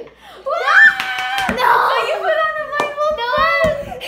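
Young girls squealing and shrieking with excitement in high, sliding voices, with a few sharp hand claps or slaps.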